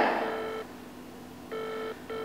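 A phone call ringing out, heard through a mobile phone's speaker: a steady electronic ringback tone, faint once just after the start, then two short tones in quick succession near the end in the double-ring pattern.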